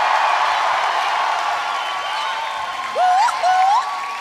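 Concert crowd applauding and cheering at the end of a song, the applause slowly dying down. Near the end a voice gives two short rising whoops.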